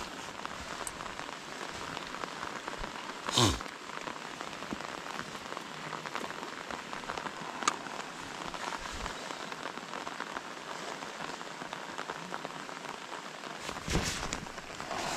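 Steady rain falling on a lake. One brief louder swish cuts through it about three and a half seconds in, and there is a faint click near the middle.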